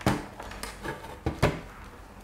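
A handheld digital multimeter being handled and set down on a desk: a few light knocks and clicks, the loudest right at the start and another pair about a second and a half in.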